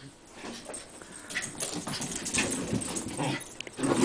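Two Shiba Inus at rough play: dog vocalising mixed with irregular scuffling and scrabbling.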